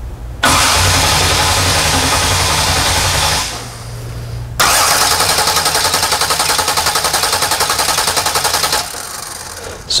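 Starter motor cranking a race-car engine twice, for about three seconds and then about four, each run stopping abruptly, the second with a quick even pulse. The cranking is fast, with the starter fed through a newly fitted, heavier main cable that loses only about one volt.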